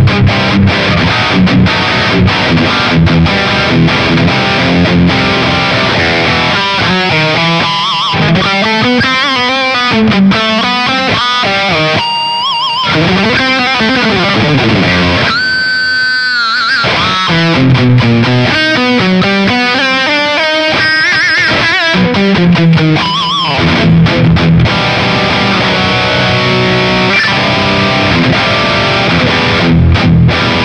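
Distorted electric guitar through a BOSS GT-1000 multi-effects processor on a scooped, aggressive high-gain crunch patch. Fast rhythmic riffing on low notes opens and closes the passage. In the middle it breaks into lead lines with vibrato and two long held high notes, about twelve and sixteen seconds in.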